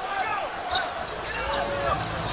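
Basketball being dribbled on a hardwood court under steady arena crowd noise.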